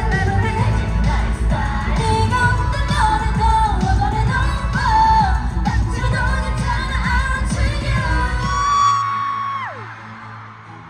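K-pop girl group singing live over a pop backing track with a heavy bass beat, recorded from the arena crowd. Near the end the beat drops out and a held high note slides down as the song finishes.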